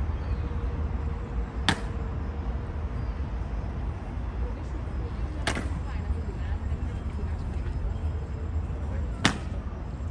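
Three sharp clacks about four seconds apart, over a low steady rumble. They are Evzone guards' hobnailed tsarouchia shoes stamping on the marble pavement in the slow ceremonial march.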